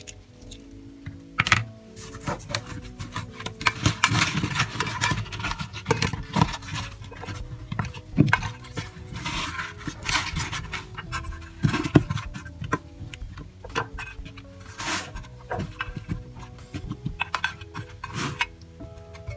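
Light background music over irregular wet squishing, scraping and knocking as hands rub seasoning into raw chicken legs and shift zucchini and carrot pieces around a roasting pan. A few sharper knocks stand out, about a second and a half, eight and twelve seconds in.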